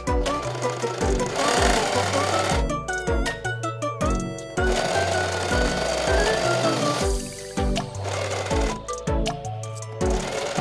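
Singer Heavy Duty electric sewing machine stitching in two short runs, a little after a second in and again from about five seconds, under background music with a steady beat.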